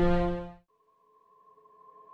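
Background music: a loud held chord fades out about half a second in. After a moment of near silence, a soft new held chord slowly swells in.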